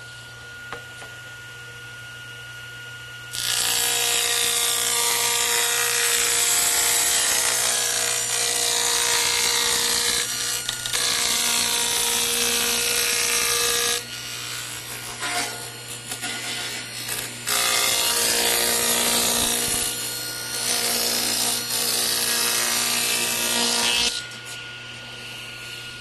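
Table saw ripping a board lengthwise. The motor runs free at first, and about three seconds in the blade bites into the wood with a loud, steady cutting noise. The noise eases and breaks up for a few seconds midway, then comes back before dropping to the motor running free near the end.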